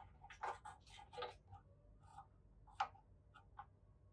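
Faint, light clicks and taps of plastic pegboard accessories being hooked into the slots of an IKEA pegboard: a quick run of clicks in the first second and a half, then scattered single clicks, the sharpest just before three seconds in.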